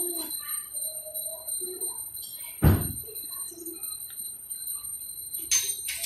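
Faint, low voices in the room, broken by one short, loud thump about two and a half seconds in, over a faint, steady high-pitched whine.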